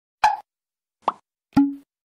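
Three short cartoon pop sound effects from an animated logo intro, with silence between them. The second glides quickly up in pitch, and the last is a sharp pop that rings on briefly as a low tone and fades.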